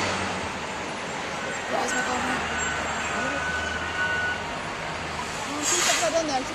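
City-centre road traffic heard from above, with the low steady hum of a bus engine running. A short hiss comes near the end.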